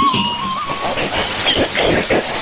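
Shortwave AM broadcast received on a software-defined radio: the end of a music track about a second in, then hissing, wavering static and noise from the radio signal in the pause before the next announcement.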